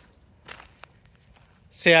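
Faint footsteps during a pause in talking, a couple of soft steps heard, then a man's voice returns near the end.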